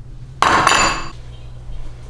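A metal spoon clinks twice against a ceramic bowl about half a second in, with a brief ringing after.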